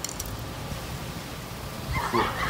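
Wind buffeting the microphone outdoors, an uneven low rumble, with a few faint ticks right at the start.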